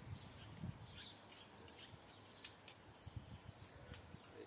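Near silence with faint outdoor background and a few faint, small clicks and taps as the metal fitting of a bow saw is handled and unscrewed by hand.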